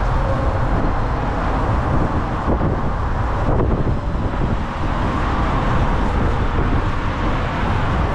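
Steady rumble of riding in an open tuk-tuk through city streets: the vehicle's running noise and road noise mixed with rushing air, with no clear breaks.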